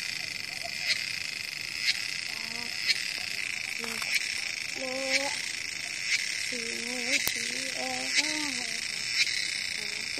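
Steady high-pitched drone from calling insects or frogs, with a short sharp call repeating about once a second, and faint voices in the background.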